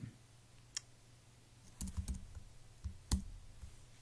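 A few separate computer keyboard key presses, sharp clicks with pauses between them: one about a second in, a short cluster around halfway, and the loudest near the end.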